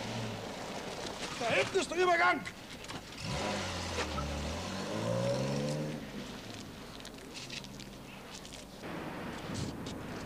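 A car engine running, then rising in pitch as the car accelerates about four to six seconds in. A brief voice is heard about two seconds in.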